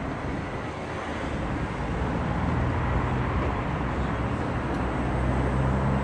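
A bus's engine running low and steady amid street traffic, growing gradually louder as it approaches.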